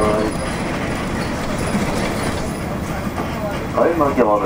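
Steady diesel engine drone and road noise heard inside the cabin of a 1992 Nissan Diesel UA (U-UA440LSN) city bus under way. A voice starts again near the end.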